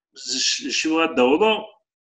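A man's voice speaking briefly over a video-call link, cutting off suddenly near the end.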